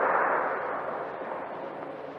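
Audience applause dying away, fading steadily.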